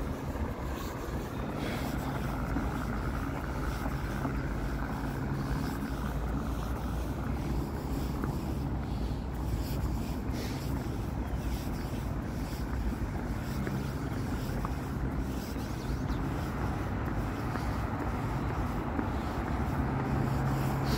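A vehicle's motor running steadily as it moves along the street, a low, even hum with wind and road noise over it.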